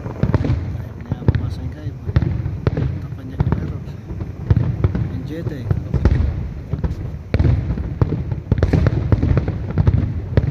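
Aerial fireworks going off in quick succession: many sharp bangs and crackles over a continuous low rumble, getting busier near the end.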